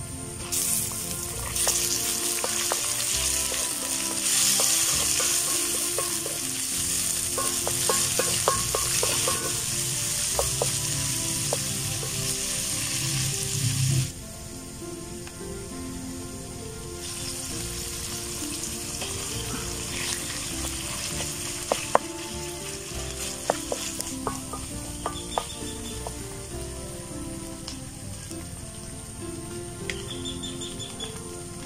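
Pork and onions sizzling in hot oil in a metal wok over a wood fire, with the light clicks of a spatula stirring. The sizzle cuts off suddenly about halfway through, leaving quieter scattered clicks and knocks.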